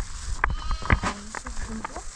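A sheep bleating, about half a second in, with a shorter, lower bleat after it.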